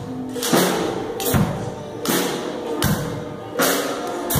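A children's band playing: a drum kit keeps a steady beat of sharp cymbal and snare hits with a low kick-drum thud about every second and a half, over held keyboard chords.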